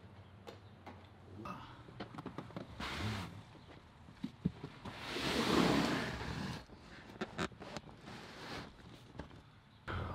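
Handling noises as a large cardboard box holding an exhaust system is carried and loaded into a pickup truck's back seat: scattered knocks and clicks, with a louder, longer rush of noise about five to six and a half seconds in.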